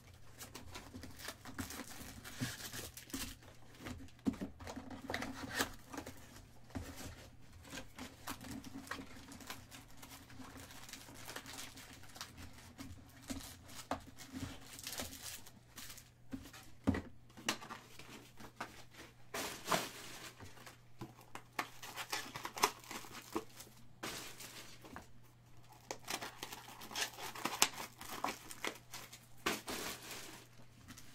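A 2018 Bowman's Best cardboard hobby box being opened by hand and its foil-wrapped trading card packs pulled out and handled: irregular crinkling, rustling and light tapping of foil and card stock.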